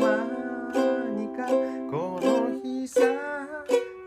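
Ukulele strummed in a steady rhythm, a chord roughly every three-quarters of a second, with a held melody line that bends in pitch sounding over the chords.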